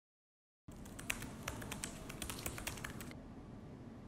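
Fingers typing on a laptop keyboard: quick, irregular key clicks that begin just under a second in and stop about three seconds in, leaving a low steady room hum.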